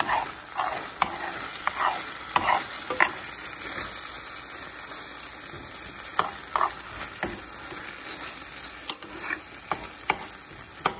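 Ground beef in sloppy joe sauce sizzling in a skillet, with a spoon scraping and stirring through it in short strokes, several in the first three seconds and a few more around six and nine seconds.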